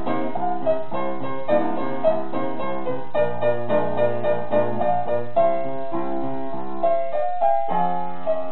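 Upright piano played four hands by two children: a steady run of many notes, with a low bass line coming in about three seconds in.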